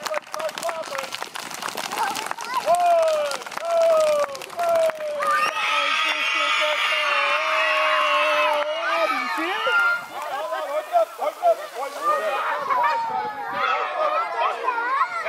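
A crowd of children stomping their feet and clapping their hands in a fast clatter, then screaming together as loud as they can for about four seconds before breaking into excited chatter.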